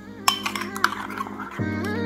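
Background music, which gets louder about one and a half seconds in, with a metal spoon clinking twice against a small bowl while stirring and scooping a seasoning paste.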